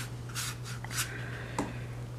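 A flat watercolour brush swiping across paper, laying down water, in a few short scratchy strokes, with a small tap about halfway through. A steady low hum runs underneath.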